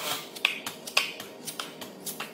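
Drywall taping knife clacking and scraping against a mud pan while loading and spreading joint compound: a run of sharp, irregular clicks, the two loudest about half a second apart, each with a brief ring.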